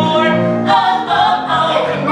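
A man and a woman singing a musical-theatre duet live, accompanied by a grand piano.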